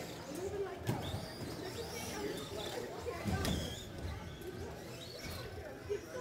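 Electric RC short-course trucks racing: motor whines rising and falling in pitch as the cars accelerate and brake, with a couple of sharp knocks from the cars on the track.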